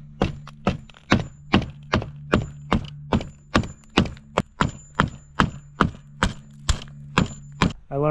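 Hammer striking the edge of a box spring's wooden frame in a steady run of about twenty blows, roughly two and a half a second, knocking the stapled fabric cover loose from the wood.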